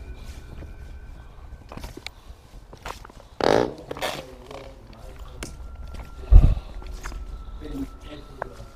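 Footsteps and scuffs over burnt debris, with scattered small clicks and crunches. A short, rough burst comes about three and a half seconds in, and a heavy low thump, the loudest sound, a little after six seconds.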